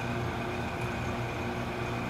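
Steady machinery hum: a constant low drone with a faint high whine over a noise haze, with no changes or distinct events.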